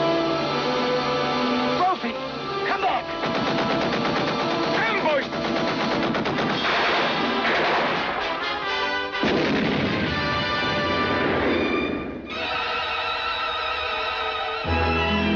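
Orchestral film-trailer music mixed with battle sound effects: bursts of rapid gunfire and explosions. The gunfire stops about two seconds before the end, leaving the music alone.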